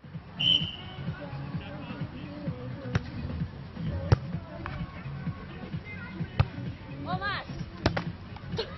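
A volleyball being played on a sand court: four sharp hits on the ball spread a second or two apart, with a short shout shortly before the last one.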